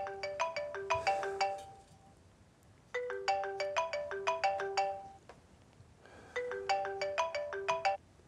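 Mobile phone ringing with a melodic ringtone: a short run of quick, bright notes played three times with pauses between, cut off suddenly near the end as the incoming call is answered.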